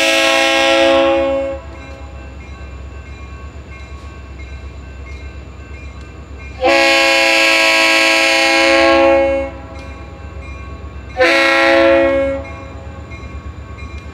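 Reading and Northern diesel locomotive's multi-chime air horn sounding for a grade crossing: the end of a long blast, a second long blast of about three seconds, then a short blast, the long-long-short crossing signal. A low diesel engine rumble is heard between the blasts.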